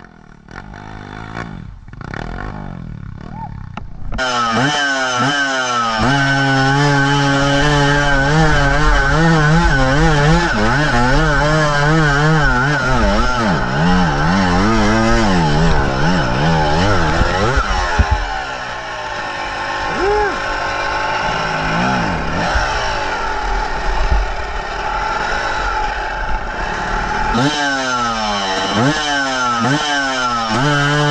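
Enduro dirt bike engine revving hard and unevenly under load on a steep hill climb, its pitch rising and falling with the throttle. It is quieter for the first few seconds and loud from about four seconds in.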